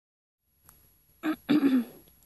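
A person clearing their throat with a voiced two-part "ahem", a short sound then a longer one falling slightly in pitch, just after a faint click.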